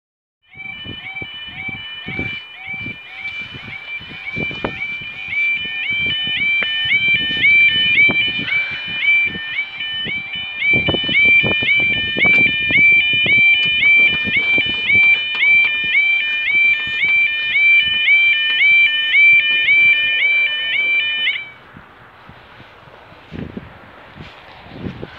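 Level crossing warning alarm sounding, a rapid repeating two-tone yodel, with a fainter lower tone pulsing alongside it for the first ten seconds. The alarm cuts off suddenly about 21 seconds in. Knocks and handling noise on the microphone sound throughout.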